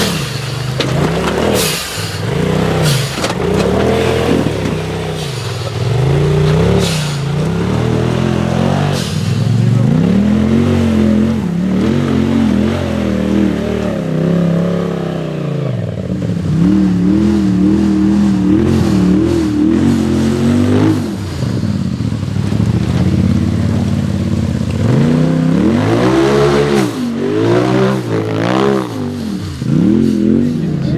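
Off-road side-by-side engines, a Polaris RZR among them, revving in repeated rising and falling surges as they climb steep, rocky ground, with occasional sharp knocks.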